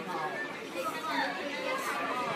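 Indistinct chatter of people's voices talking in a shop, no single voice clear.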